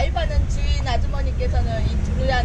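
People talking in short phrases over a steady low rumble of road traffic.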